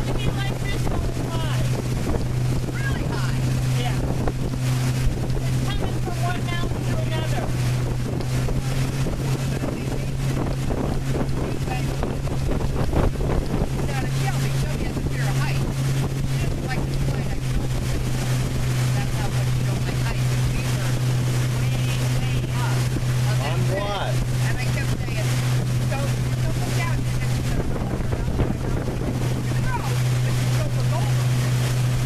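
Pontoon boat's motor running steadily under way, a constant low drone, with wind buffeting the microphone.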